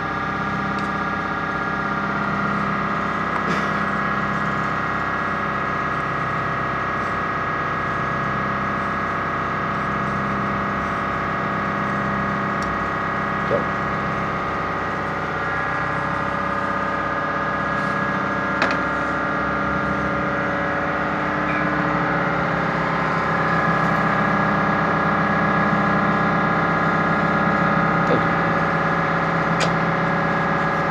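A machine running steadily with a hum of several steady tones and a slow, regular pulse in its low end, with a few light clicks over it.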